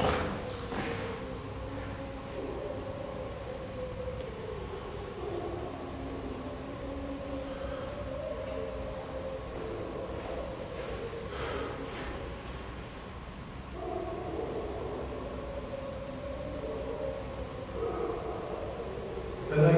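Faint howling: several long, wavering calls, each lasting a few seconds, with a lull in the middle, over a faint steady hum.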